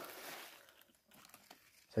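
Faint rustling and crinkling of dry plant matter, fading after the first half-second, then a few soft scattered crackles.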